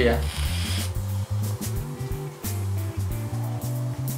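A person blowing out a large cloud of vape vapour: a breathy hiss that fades out within about the first second. Background music with a steady bass line runs under it.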